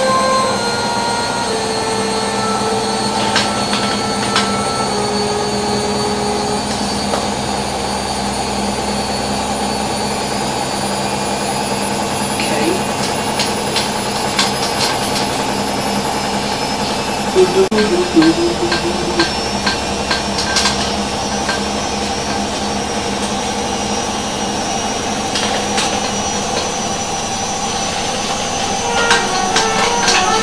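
Bosch Logixx 6 front-loading washing machine spinning: a steady motor drone with a faint high whine that rises slowly in pitch as the drum speeds up, with scattered light knocks from the load partway through.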